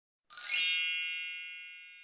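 A single bright ding, an editing chime sound effect for a section title card, with many high ringing tones that strike about a third of a second in and fade out slowly over nearly two seconds.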